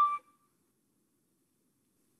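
A flute's long held note, the last note of the piece, cuts off about a quarter second in, followed by near silence.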